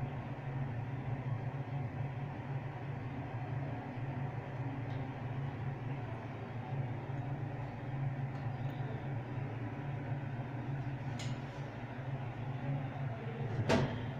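A steady low machine hum, with a light click about eleven seconds in and a louder sharp knock near the end.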